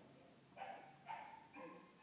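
Dog whining faintly: three short, high-pitched whines in the second half.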